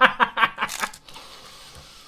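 A man laughing in quick 'ha-ha' bursts, about four a second, that die away after about a second, followed by a stretch of faint, even noise.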